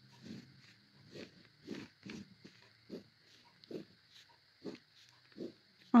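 Ballpoint pen drawing short straight lines on lined notebook paper: about eight brief, separate scratching strokes spaced unevenly, each under half a second.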